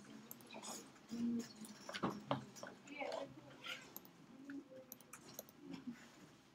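Faint room sound: scattered small clicks and knocks with a few brief, faint voice sounds.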